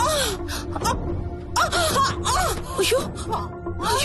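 A woman moaning and gasping in pain in short, rising-and-falling cries, over background music with a steady held tone.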